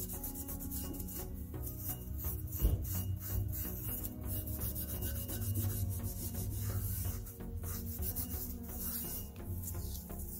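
Red Scotch-Brite abrasive pad rubbed in repeated scrubbing strokes over the face of a rusty flywheel, scuffing off surface rust. Background music plays underneath.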